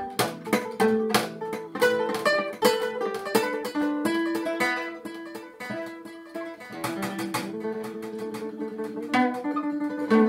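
Solo acoustic guitar fingerpicked, a run of plucked notes and chords with a slower stretch of held notes around the middle before the plucking picks up again.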